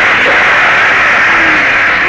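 Heavy rain, a loud steady hiss.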